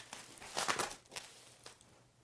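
Bubble-wrap plastic packaging rustling and crinkling as it is handled and set down, most of it in a short burst about half a second in, followed by a couple of faint clicks.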